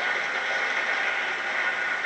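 Audience applause: steady clapping from a lecture-hall crowd.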